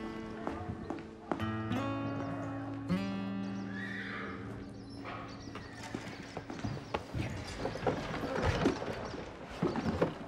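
Background music of long held notes, with a horse neighing about four seconds in. Through the second half, irregular knocks and clatter, like hoof clops on a stable floor.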